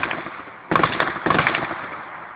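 Heavy gunfire in a built-up area. One loud report comes as the sound begins, then a rapid volley of shots follows from just under a second in, echoing off the surroundings as it dies away.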